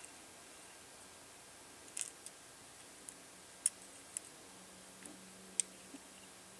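Small plastic parts clicking and tapping as a circuit board is pressed and lined up against its black plastic case: a handful of short, sharp clicks, the loudest a little past halfway and near the end.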